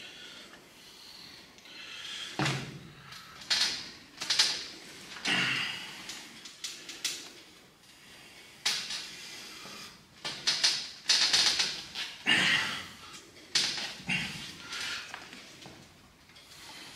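Heavy, forced breaths and short grunts of effort from two men straining against each other in an arm-wrestling bout. They come in irregular bursts, thickest about ten seconds in.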